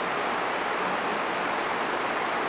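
Steady, even hiss of background noise in the recording, with no other sound.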